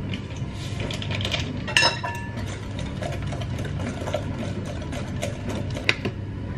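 Steady low hum of a running kitchen appliance motor. Over it come handling sounds: a ringing clink about two seconds in and a sharp tap near the end.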